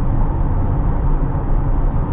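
Steady road noise inside the cabin of a 2023 Chevrolet C8 Corvette Z51 convertible at highway speed with the windows up: mostly tyre noise, with little wind noise.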